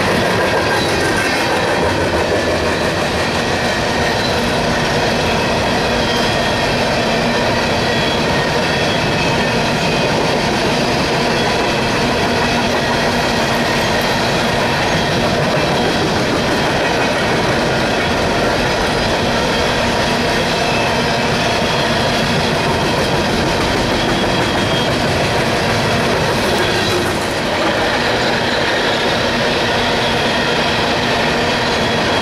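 A freight train of coal gondolas rolls past close by: a loud, steady rumble of steel wheels on the rails with thin, steady squealing tones over it.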